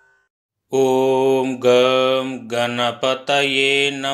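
A man chanting a Hindu devotional mantra in long, held notes on a steady low pitch. It starts about a second in, after a brief silence.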